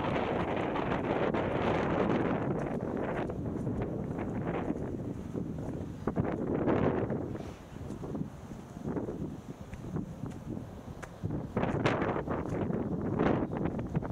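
Wind buffeting the camera's microphone in gusts, strongest at the start, easing about halfway through and picking up again near the end.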